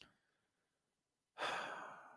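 Near silence, then a man's breath into the microphone about one and a half seconds in, fading away over half a second.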